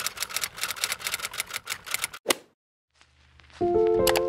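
Typewriter sound effect: rapid key clacks, about eight a second, as text types out letter by letter, ending with one louder strike a little after two seconds in. After a second of silence, music begins near the end.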